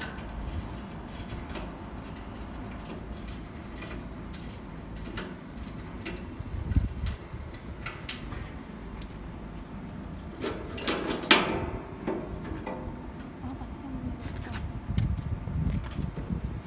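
Stainless steel parts of a spiral juicer being taken apart by hand: small metal clicks and clinks from the thumb screws and the perforated filter screen, with a louder metal clatter about eleven seconds in as the screen comes off. A low wind rumble on the microphone runs underneath.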